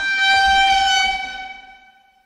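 A single steady horn-like tone, held for about a second and a half and then fading out near the end.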